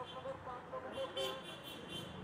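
Roadside street noise: traffic with a brief vehicle horn, murmuring background voices, and a few light clinks of steel plates and utensils about a second in.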